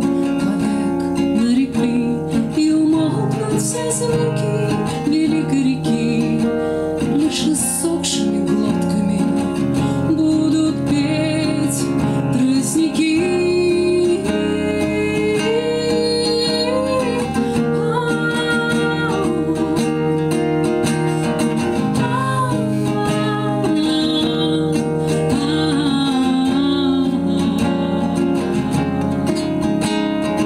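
Acoustic guitar strummed and picked in a steady accompaniment, with a woman singing a Russian bard song over it.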